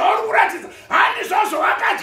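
A man preaching in a loud, raised, shouting voice, in quick runs of syllables.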